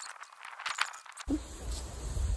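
Dry, dead elkhorn fern fronds crackling and rustling as they are broken and trimmed off, with several light sharp clicks in the first second or so.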